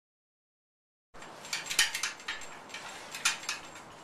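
After about a second of silence, a handful of light metallic clinks and clanks from steel tubing being worked in a hand-wheel tube roller.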